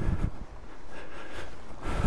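Wind buffeting the microphone: a low rumble in the first moment, easing to a steady rushing hiss.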